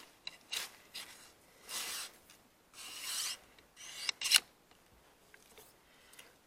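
Crossbow bolt being slid into the launcher's barrel: two quiet rasping rubs as the shaft scrapes along the tube, with a few light clicks and a sharper click or two near the end as it seats.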